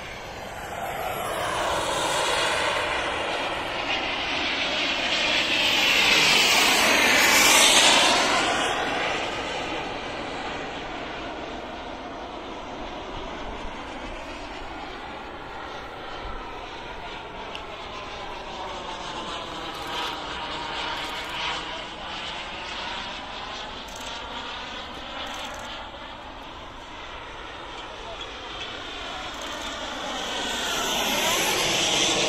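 Small turbine engine of a radio-controlled L-39 model jet (SW190 turbine) running in flight as the jet passes, with sweeping pitch changes. It swells to its loudest about seven to eight seconds in, fades, then swells again more softly around twenty seconds in.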